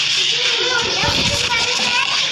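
Children's voices and chatter in the background, over a steady mix of noise.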